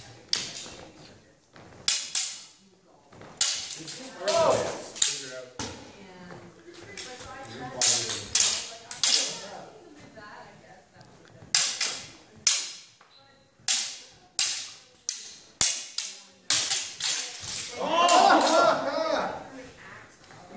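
Steel training swords and daggers clashing in a sparring bout: sharp, irregular metallic clacks with a brief ring, sometimes two or three in quick succession, scattered throughout. Brief voices come in around a quarter of the way in and again near the end.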